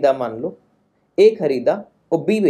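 Only speech: a man talking in two short bursts, with a pause of about half a second in the middle.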